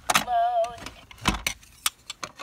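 Fisher-Price Laugh and Learn toy radio: a few sharp plastic clicks as its front disc is turned by hand, and a short wavering electronic tone from the toy's speaker about a quarter second in.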